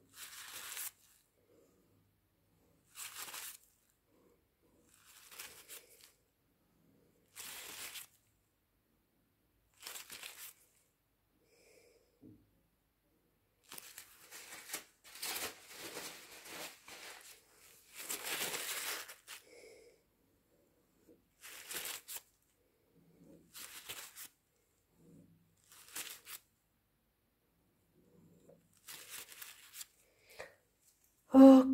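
Paper towel crinkling and rustling in short bursts every few seconds, with a longer spell of handling about halfway through, as it is crumpled and wiped.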